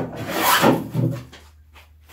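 Veritas low angle jack plane, a bevel-up hand plane, taking shavings off a wooden board: two or three short strokes, about two a second, that stop about halfway through.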